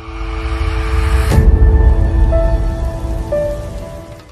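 Logo sting: a rising whoosh builds into a sharp, deep hit about a second and a half in, over a heavy low rumble and held musical tones that slowly fade.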